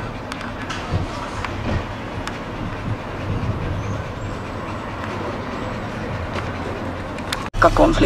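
Steady low rumbling background noise with a constant low hum and a few faint clicks; it cuts off abruptly near the end.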